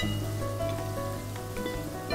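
Background music with steady held notes, over a faint sizzle of masala paste frying in mustard oil in a steel kadhai as it is stirred.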